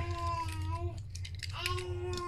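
A cat meowing twice: two long, fairly level-pitched meows, the second beginning about a second and a half in.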